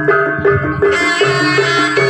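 Javanese gamelan music accompanying a jathil dance: a repeating pattern of struck metal notes over drum beats, joined about a second in by a brighter, higher melodic line.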